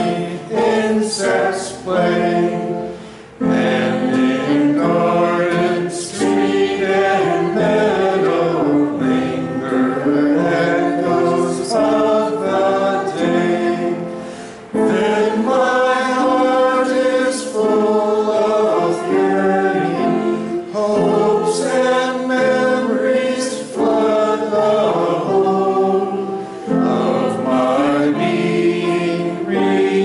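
A small mixed group of men's and women's voices singing a hymn together in long held phrases, with a short break between phrases about three seconds in and again about halfway through.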